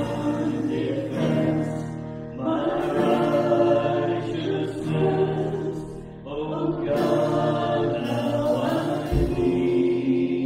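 Contemporary worship song sung live by a man and a woman together, with acoustic guitar and keyboard accompaniment; the sung lines come in long phrases with short breaths between them.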